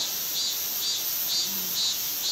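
Insects chirping in a steady pulsing rhythm, about two to three high chirps a second.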